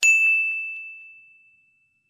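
A single high-pitched ding sound effect, one bell-like strike that rings a single clear tone and fades away over about a second and a half.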